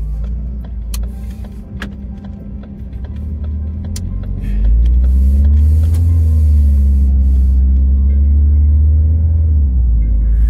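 Car interior: engine and road noise as the car pulls away and drives on. A deep rumble swells suddenly about halfway through and holds steady, with a faint engine hum that rises slightly and settles.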